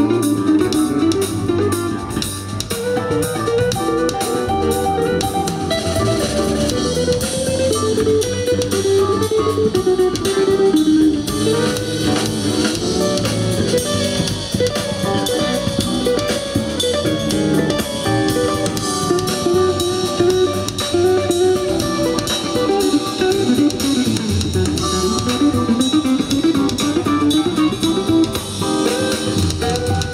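A jazz band playing live: an electric guitar carries a running melodic line over drum kit and bass.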